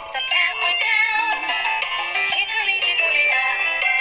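Nursery-rhyme music with a high-pitched, synthetic-sounding sung voice.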